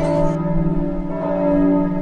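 Bells ringing, several pitches held and overlapping and changing in turn like a chime. Banjo music cuts off about a third of a second in, just as the bells take over.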